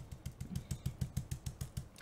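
Dome stencil brush stippling paint through a checkerboard stencil: rapid soft dabbing taps, about eight a second, that stop shortly before the end.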